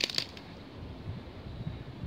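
Faint outdoor background noise, mostly a low, uneven rumble, with a short click right at the start.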